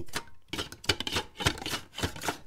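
Cucumber slicing on a stainless steel mandoline: a quick run of scraping strokes, about four a second, as the cucumber is pushed back and forth over the blade, cutting thin slices.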